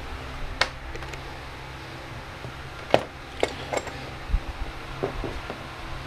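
Light clicks and knocks of small metal parts being handled and set down on a workbench, a handful of them, the sharpest about halfway through, over a steady low hum.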